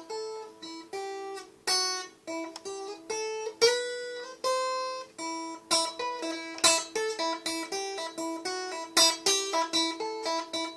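Cutaway acoustic guitar playing a short riff: a quick run of plucked single notes over one note left ringing underneath.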